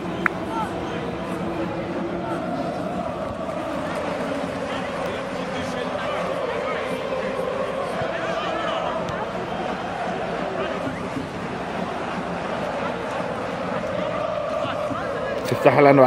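Indistinct, distant chatter of players and sideline spectators across a soccer field, steady throughout, with one small click just after the start.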